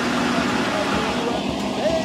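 Steady rush of river water churned along the hull of a moving riverboat, over the steady low hum of its engine, with a faint voice near the end.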